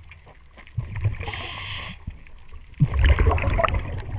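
Scuba diver's regulator heard underwater: a hissing inhalation about a second in, then a louder low rumble of exhaled bubbles near the end, over light ticking and scraping.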